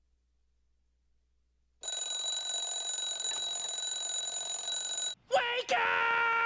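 Alarm clock ringing: it starts suddenly about two seconds in, rings steadily for about three seconds and cuts off. A short burst of a voice follows near the end.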